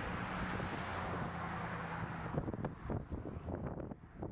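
A vehicle going by on the road, a steady hum that fades out about halfway through, followed by a few light clicks and knocks.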